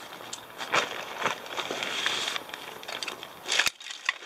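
Rustling and crinkling of lightweight backpack fabric and a stuff sack as hands rummage inside the pack and pull the sack out. A sharp click comes near the end.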